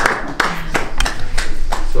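Scattered hand claps from a small group, thinning out toward the end.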